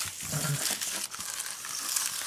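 Clear plastic comic bag crinkling and rustling as a comic book is slid into it and handled.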